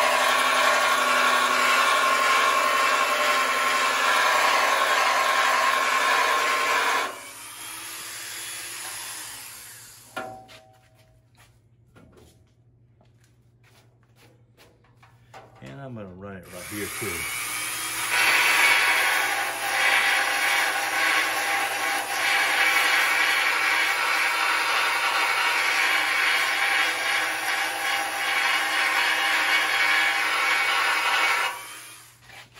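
Narrow belt sander (belt file) grinding primer off a steel bracket to bare metal for plug welding. It runs for about seven seconds, stops for about ten seconds, then runs again steadily.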